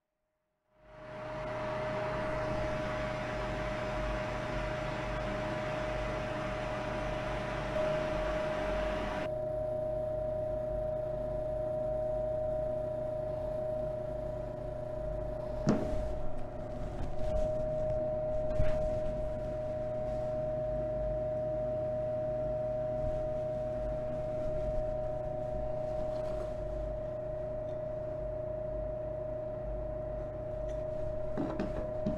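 Gas torch flame running steadily into a ceramic melt dish, melting precipitated gold powder: a steady hiss with a constant tone under it. The high part of the hiss drops away about nine seconds in, and a few sharp clicks come around the middle.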